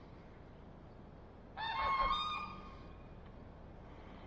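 A single loud bird call, starting about a second and a half in and lasting about a second, over a faint steady background.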